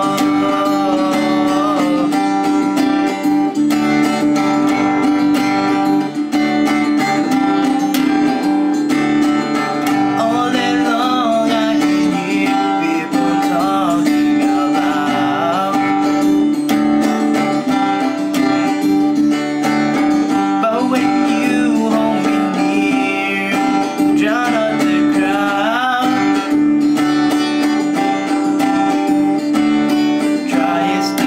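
Acoustic guitar strummed steadily, with a man's voice singing a slow ballad over it in phrases that come and go.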